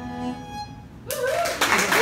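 The band's last held fiddle and guitar notes die away. About a second in, audience applause breaks out and swells, with a rising whooping cheer over the clapping.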